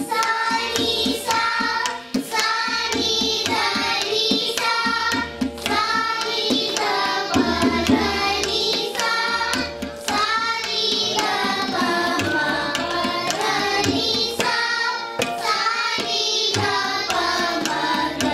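A group of children singing an Indian classical song together, accompanied by tabla played with the hands in a steady rhythm.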